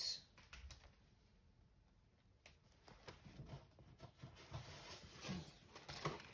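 Faint, scattered clicks and crackles of a pet chewing an envelope and a piece of cardboard, starting about two and a half seconds in after a near-silent start.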